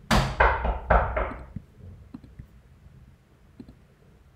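A quick series of three or four loud knocks and thumps close to the microphone in the first second and a half, fading out, followed by a few faint clicks.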